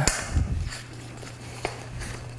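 Handling noise from a bicycle wheel as its inner tube is pulled free: a sharp click right at the start and another about a second and a half in, over a steady low hum.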